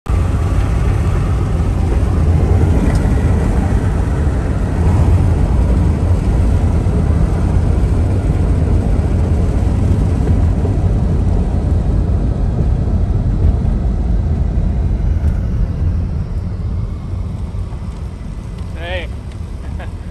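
Car driving along a highway, heard from inside the cabin: a steady low rumble of road and engine noise that dies down over the last few seconds as the car eases off.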